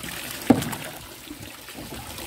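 Water trickling steadily in a fish tank, with one sharp slap about half a second in.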